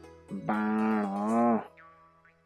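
A voice calling out the Nepali letter ण (ṇa) as one long, drawn-out syllable, over faint background music.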